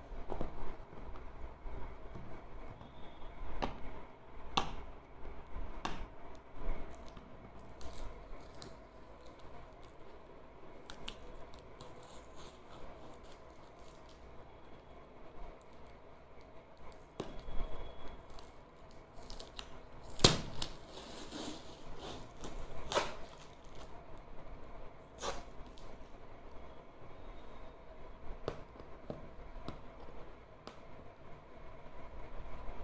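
Packing tape being picked at and peeled off a corrugated cardboard box, tearing away the cardboard's top paper layer, with scattered sharp crackles and handling knocks and one louder snap about two-thirds of the way through.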